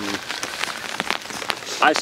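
Light rain pattering: a steady hiss scattered with sharp individual drop ticks.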